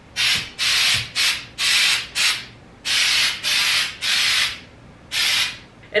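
An aerosol can of spray snow, sprayed in about ten short hissing bursts with brief gaps between them: touching up the flocking on an artificial Christmas tree after a second coat.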